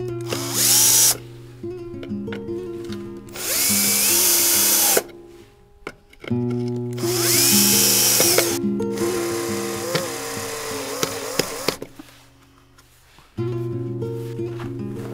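Bosch cordless drill/driver working a screw on the headlight rim of a classic Rover Mini, in three short bursts that each spin up with a rising whine, then a quieter, wavering run. Background music plays throughout.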